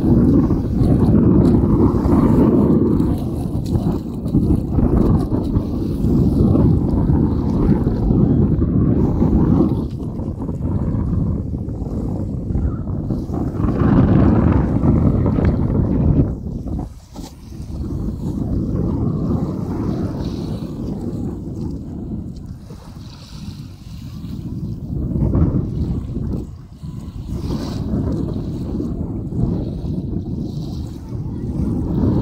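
Wind buffeting the microphone: a loud, low rumbling noise that rises and falls in gusts, with a brief lull about seventeen seconds in.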